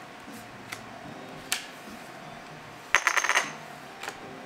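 Poker chips clicking against each other: a few single light clicks, then a short clattering run about three seconds in.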